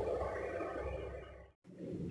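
Faint, steady cooking noise from a pan of gravy on a stove burner. It fades and then cuts off to silence about one and a half seconds in.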